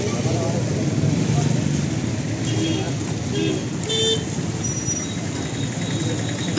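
Busy street noise: steady traffic rumble with background voices, and a short vehicle horn toot about four seconds in.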